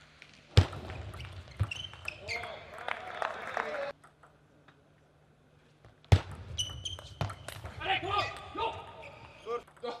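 Table tennis play in a large, echoing hall: sharp cracks of the ball off bats and table, squeaks of rubber-soled shoes on the court floor, and a player's shouts. It comes in two bursts of play, with about two seconds of near silence between them.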